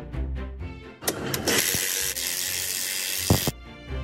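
A ratchet working a bolt on a trailer's SAF axle disc brake caliper: a dense, clattering run of about two and a half seconds starting about a second in, ending with a couple of sharp clicks. Background music plays before and after it.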